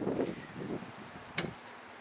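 A single sharp click about one and a half seconds in, from the hood release lever under the dashboard of a 2002 Volvo S80 being pulled, over wind noise on the microphone.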